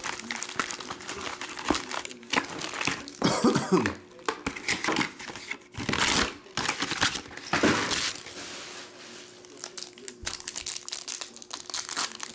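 Foil trading-card pack wrappers crinkling and rustling as packs are handled and torn open, in irregular bursts, with a cough about four seconds in.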